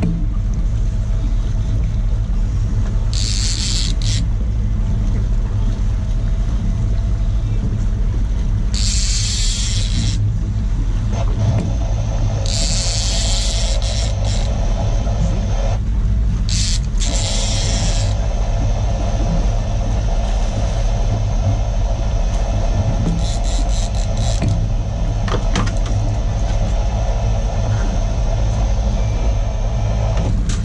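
Steady low drone of a fishing boat's engine running, broken by about five short bursts of hiss, each a second or so long.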